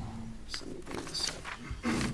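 Brief indistinct vocal sounds in the meeting room: a few short, rough voice noises about half a second in, around a second in and near the end, rather than clear speech.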